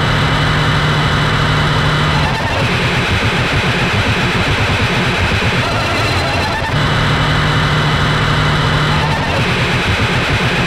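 Loud, heavily distorted grindcore/sludge recording: guitar, bass and drums playing a dense, grinding riff that repeats about every six and a half seconds.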